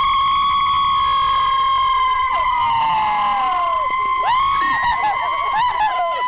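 A group of cheerleaders screaming at the camera: one long, high, held scream that trails off with other voices sliding down, then a second scream from several voices together about four seconds in.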